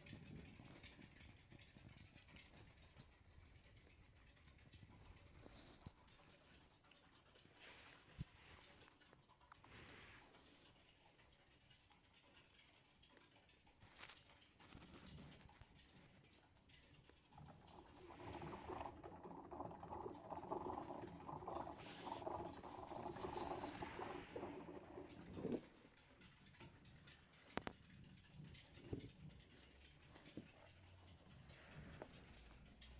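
Faint small clicks and patter of pet degus scurrying and nibbling on a carpet. From about 18 to 25 seconds in there is a louder, steady pitched sound.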